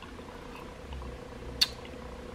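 A faint steady low hum, swelling slightly in the middle, with a single sharp click about one and a half seconds in.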